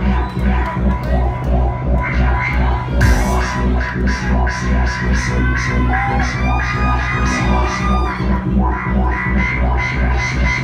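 Electronic dance music from a live DJ set played loud over a club sound system: a steady kick drum at about two beats a second under a synth line, with hi-hats coming in about three seconds in.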